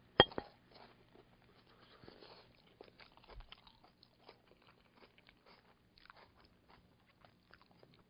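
A person quietly chewing a mouthful of pan-fried stuffed okra (bharwan bhindi): faint, irregular little clicks of chewing, with one sharp click just after the start.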